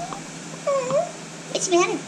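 Puppy whining: a short whine, then a longer one that dips and rises in pitch, before a person's voice comes in near the end.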